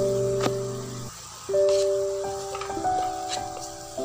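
Background music of slow held notes, breaking off briefly about a second in. Under it, a few light taps of a wooden spatula stirring spiced onions and tomatoes in a frying pan.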